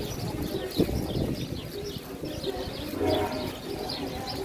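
Birds chirping repeatedly in trees, with outdoor background noise and a brief thump just under a second in.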